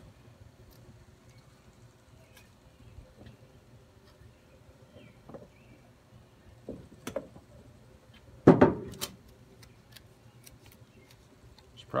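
Faint clicks and handling noise of hands working wires in a plastic electrical enclosure, with one louder brief burst of noise about eight and a half seconds in.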